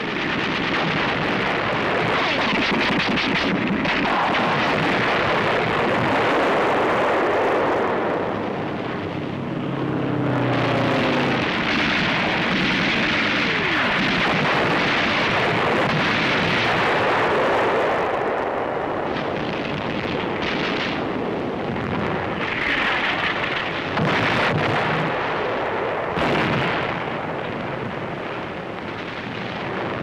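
Newsreel battle soundtrack: continuous artillery fire and shell explosions with gunfire, a dense, unbroken rumble, with a falling whine about ten seconds in and a sharp new blast near the end.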